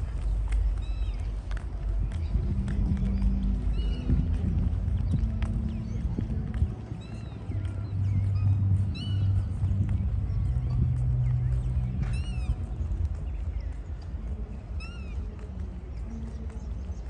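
Outdoor walking ambience: short, arched bird calls every few seconds over a low rumble, with footsteps on paving.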